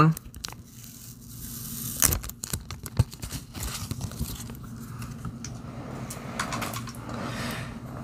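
Protective plastic film being peeled off a new GoPro Hero 9 Black camera: a drawn-out crinkly tearing, with a few sharp ticks about two and three seconds in.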